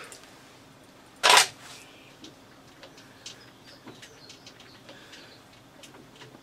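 One short metallic scrape about a second in, from work on a lathe's independent four-jaw chuck as a jaw is nipped up with the chuck key, then a few faint light clicks.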